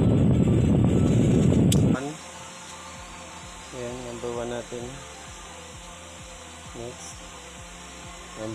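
A 12-volt electric fan running, its air rushing across the microphone, for about two seconds, then cut off sharply with a click. After that it is quiet, with a few faint, brief voice sounds.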